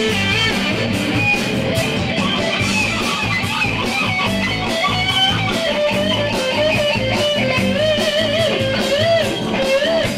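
Live electric guitar solo in a blues-rock jam, bending and wavering notes that are held with wide vibrato in the second half, over a bass and drum backing with a steady beat.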